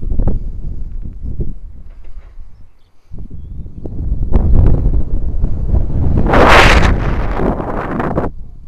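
Wind buffeting the microphone of a camera on a swinging jump rope: a gusty low rumble that drops briefly about three seconds in, then builds to a loud hissing rush about six to seven seconds in.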